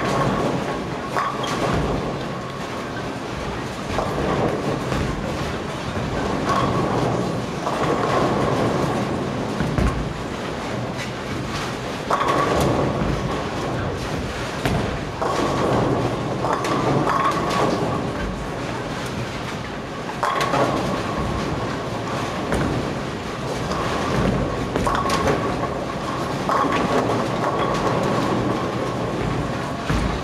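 Bowling alley din: balls rolling down the lanes in a continuous rumble, with pins crashing every few seconds.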